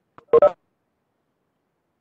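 A short electronic two-note beep, two quick tones together lasting about a quarter of a second, shortly after the start.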